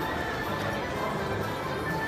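Slot machine game music and sound effects over the din of a casino floor, as the last free spin of the bonus ends.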